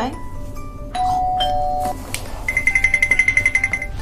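Doorbell sound effect: a two-note ding-dong chime about a second in, then a fast electronic ringing trill of rapid high beeps, about ten a second, from about halfway to near the end, over background music.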